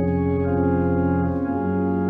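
Organ playing sustained chords, changing to a new chord about one and a half seconds in.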